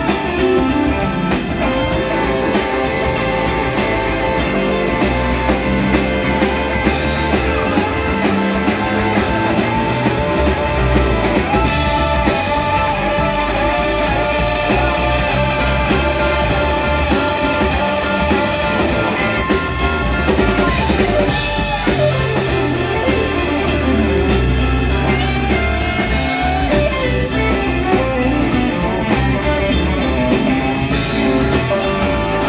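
Live blues band playing an instrumental section: electric guitar lead over drum kit and bass, with bent notes about two-thirds of the way through.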